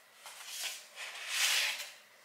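Cardboard scraping and rustling as a hardcover book is slid out of a corrugated cardboard mailer box: a few light scuffs, then a longer, louder scrape about one and a half seconds in.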